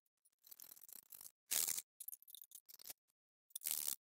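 Faint handling sounds as a metal alt-az telescope mount head is lifted and fitted onto its tripod: light scattered clicks and scrapes, with two short louder bursts about a second and a half in and near the end.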